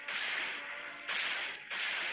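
A whip lashing again and again, about one stroke a second, each a sharp swishing crack, over background music.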